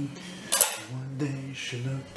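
Brushes and painting gear clinking and rattling as they are rummaged through in search of a small brush, with one sharp clink about half a second in, while a man hums low, held notes.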